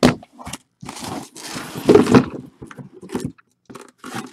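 Cardboard shipping case being handled and opened: cardboard scraping and crackling in a run of irregular bursts, loudest about two seconds in.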